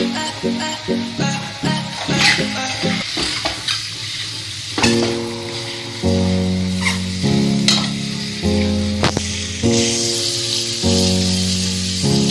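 Boiled eggs sizzling as they fry in hot oil and masala in a small pan, with a few sharp clinks of a steel spoon against the pan as they are turned. Background music plays over it: a bouncy rhythmic tune at first, then held chords changing about every second from about five seconds in.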